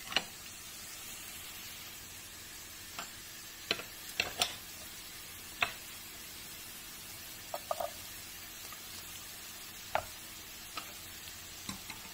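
Chopped onion and garlic sizzling steadily in oil in a pot, while a wooden spoon stirs and knocks sharply against the pan a few times as diced carrots are added.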